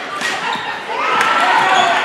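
A basketball bouncing on a hardwood court during live play, a few sharp knocks, under the voices of players and crowd.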